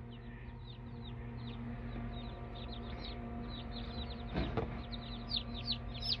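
Day-old Buff Orpington chicks peeping: many short, high, downward-sliding peeps, growing more frequent and louder near the end, over a steady low hum.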